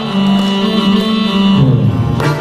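Ensemble of Russian folk instruments, with domras in front, playing an instrumental passage between sung lines: a held chord that changes about one and a half seconds in.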